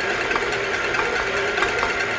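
Stand mixer's motor running steadily at low speed, its wire whisk beating egg whites in a stainless steel bowl, with a light regular ticking.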